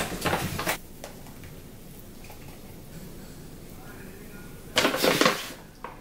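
A plastic bag of plaster crinkling as it is handled, briefly at first and then in a louder rustle near the end, with a quiet stretch in between.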